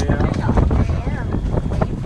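Wind buffeting the microphone, with indistinct voices in the background.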